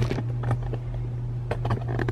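Sheets of sublimation paper being handled and set down on a heat press, with a few light rustles and taps about half a second in and again near the end, over a steady low hum.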